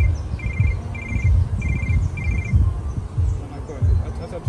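A mobile phone ringing in short repeated electronic trills, about three every two seconds, that stop a little past two seconds in, as the call is picked up or cut off. Low rumbling on the microphone runs under it and is the loudest sound.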